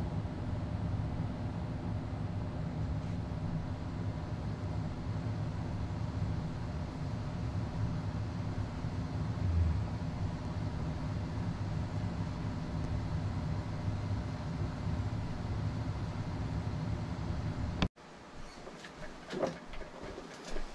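Motorized display turntable running under a 1/6-scale action figure: a steady low mechanical hum with fixed tones. It cuts off suddenly near the end.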